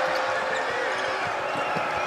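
Arena crowd noise with a basketball being dribbled on the hardwood court, a few faint bounces standing out.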